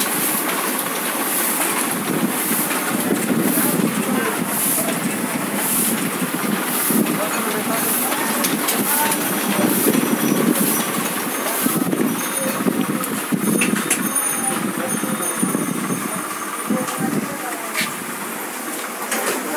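Demy-size sheet-fed offset printing press running steadily, with a hiss that repeats about once a second as the machine cycles sheet after sheet, and a few clicks toward the end.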